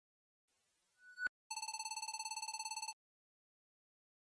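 Electronic sound effect: faint static that swells and ends in a sharp click, then a buzzing electronic tone, like a telephone ring, rapidly pulsing for about a second and a half before cutting off.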